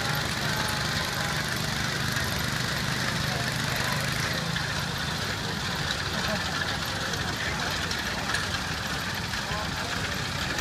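A 1964 Allis-Chalmers B-10 garden tractor's single-cylinder engine runs steadily under load while it pulls a weight-transfer sled. Its low drone weakens about halfway through.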